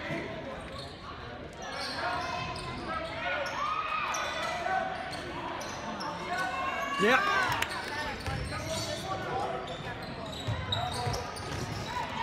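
Gymnasium sound of a basketball game in play: crowd chatter, a basketball bouncing on the hardwood court, and a few short sneaker squeaks. A spectator calls "yeah" about seven seconds in.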